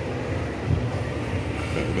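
Steady low hum of background machinery.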